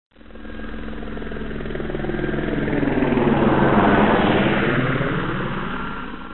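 Helicopter flying by, its engine and rotor growing louder to a peak about four seconds in and then fading.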